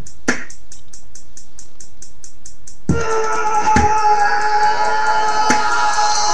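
Instrumental hip-hop beat with a fast, steady hi-hat and deep kick drums that fall in pitch. For about the first three seconds little but the hi-hat plays, then the kicks and held keyboard tones come back in.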